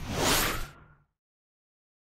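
A whoosh sound effect from a channel intro vignette, a noisy sweep that fades over under a second and then cuts off suddenly.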